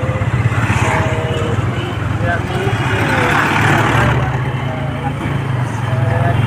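Motorcycle engine running at a steady cruise, a low drone with fast, even firing pulses, under road and wind noise. A rushing noise swells about three seconds in and fades again.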